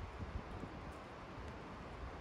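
Faint, steady outdoor background: an even hiss with a low rumble underneath, with no distinct events.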